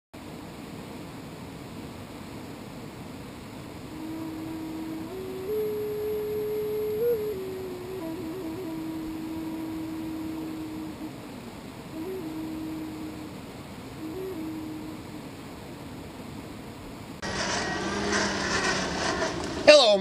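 Steady rush of a river, with a slow, simple tune of single held notes stepping up and down from about four to fifteen seconds in. Near the end the background turns to a louder, brighter noise.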